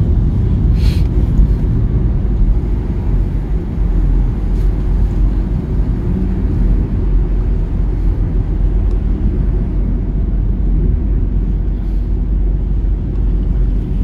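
Steady low rumble of a Hyundai compact car in motion, heard from inside the cabin: tyre, road and engine noise while driving at a steady speed.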